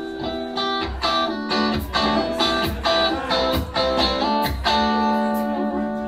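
Live band playing a song intro with no vocals: a Stratocaster-style electric guitar plays chords and picked notes, with bass notes underneath.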